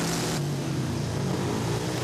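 Speedway motorcycle engine running in the pits, its pitch wavering up and down. The sound changes abruptly about half a second in.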